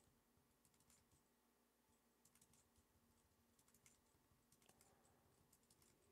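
Very faint computer keyboard typing: short clusters of keystrokes every second or so, barely above near silence.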